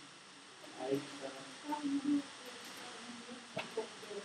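Indistinct voices in a room, too faint or distant to make out words, with a single sharp click about three and a half seconds in.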